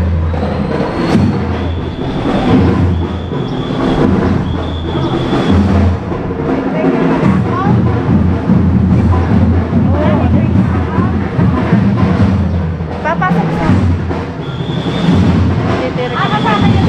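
Drums playing a low, heavy beat, with people talking around them; a short high steady tone recurs several times.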